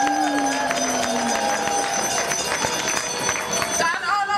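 A crowd applauding and cheering, dense clapping throughout, with a drawn-out cheer over the first second or so.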